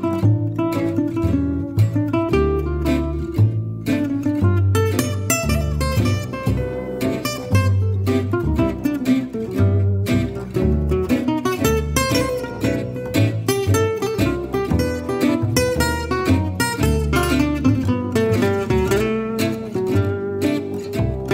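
Gypsy jazz trio playing: two Selmer-style acoustic guitars, one picking a fast single-note line over the other's rhythm, with a plucked double bass holding low notes underneath.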